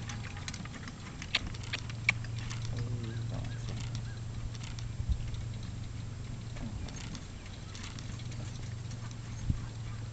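A single horse trotting in harness on grass, pulling a four-wheeled driving carriage: scattered light hoof and harness clicks over a steady low hum.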